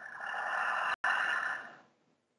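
A woman's audible breath, drawn out as a long breathy rush that breaks off sharply about a second in, then resumes and fades away.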